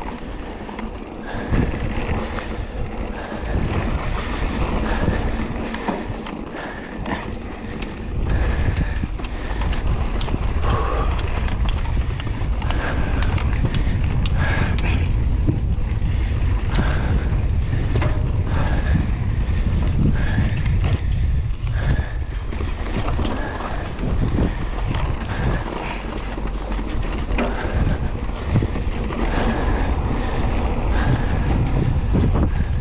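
Mountain bike ridden fast over a dirt track: wind rumbling on the microphone, getting louder about a quarter of the way in, tyres on dirt and the bike rattling and knocking over bumps. A short squeak repeats about once a second, from a chain running dry and unlubricated.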